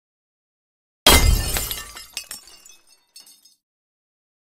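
Glass shattering: one sudden crash about a second in, followed by tinkling pieces that die away over a couple of seconds.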